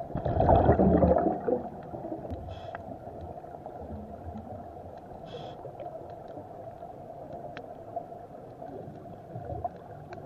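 Scuba diver breathing through a regulator, heard through an underwater camera housing: a loud gurgling rush of exhaled bubbles in the first second and a half, then two short high hisses over a steady muffled underwater background.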